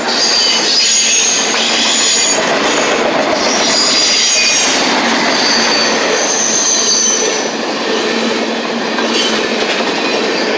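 Freight train's autorack and tank cars rolling past at close range: a loud, steady rumble and clatter of steel wheels on rail, with thin high-pitched wheel squeals coming and going.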